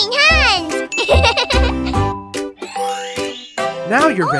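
Children's cartoon song: bright backing music with a child's voice exclaiming at the start, chime-like jingles, and a rising glide about three seconds in.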